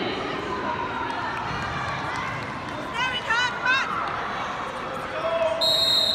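Spectators and players calling out over a steady crowd hubbub, with a couple of high-pitched shouts about three seconds in. Near the end a referee's whistle sounds, one steady shrill blast.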